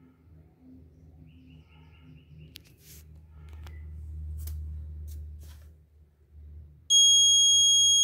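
Piezo buzzer of an Arduino automatic school-bell timer going off with a loud, steady high-pitched beep that starts abruptly about seven seconds in, as the clock reaches the top of the minute: the third scheduled bell. Before it there are only a faint low hum and a few soft clicks.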